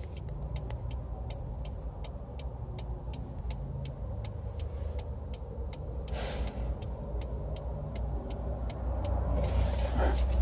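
Car cabin noise while driving: a low steady rumble of engine and road, with a fast regular ticking over it. A brief hiss comes about six seconds in, and the rumble grows louder near the end.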